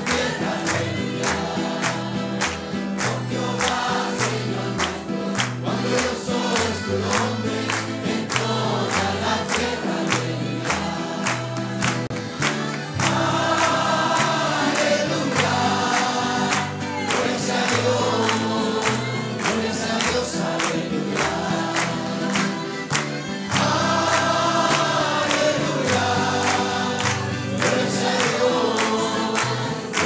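A congregation sings a worship song together over instrumental accompaniment with a steady beat and a walking bass line, many people clapping along in time. The voices swell louder twice, about halfway through and again near the end.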